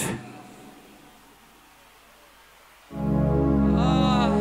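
After a quiet stretch, a stage keyboard comes in about three seconds in with a loud held chord that stays steady.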